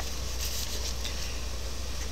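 Electric fan running steadily in a small room, a constant rushing noise with a low hum beneath it, and a couple of faint clicks in the first second.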